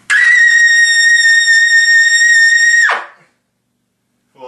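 Trumpet played on a stock Bach 7C mouthpiece, holding one loud high double C for about three seconds, with a quick scoop up into the note at the start and a clean cutoff.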